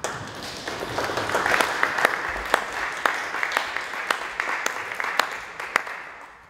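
Small audience applauding, with individual claps standing out. The applause starts at once and dies away near the end.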